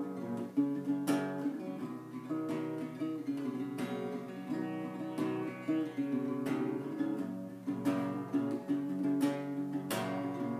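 Acoustic guitar played solo, a picked pattern of notes with a sharper struck chord about every second and a quarter.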